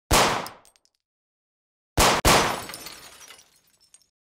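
Logo intro sound effect: a sharp bang right at the start that fades within about half a second, then a second, doubled bang about two seconds in with a longer fading tail.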